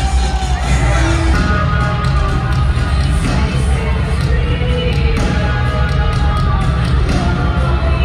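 A wrestler's entrance theme plays loudly over a stadium sound system, heavy in the bass, while a large crowd cheers and shouts over it.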